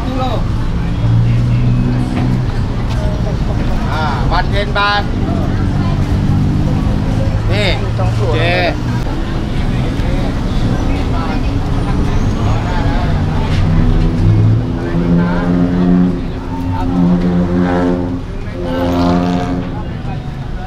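Voices of people talking, not clear enough to be transcribed, over the steady engine noise of passing road traffic.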